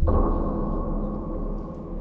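A trailer sound-design hit: a sudden deep impact followed by a held ringing tone that slowly fades.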